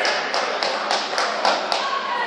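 A quick, even run of sharp taps, about seven of them at three to four a second.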